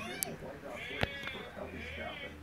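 A high, quavering voice-like cry in short wavering bursts, bleat-like, with a sharp click about a second in.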